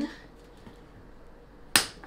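A single sharp plastic click a little before the end, as a stick in a Boom Boom Balloon game is pushed down one notch through the frame toward the balloon; otherwise quiet room.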